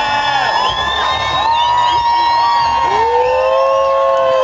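Large crowd cheering and whooping, with many long held shouts rising and falling over one another.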